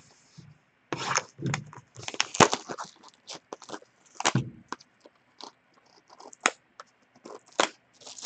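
Trading card box being torn open by hand, then a foil-wrapped card pack handled: irregular crackling, ripping and rustling of cardboard and plastic wrap, starting about a second in.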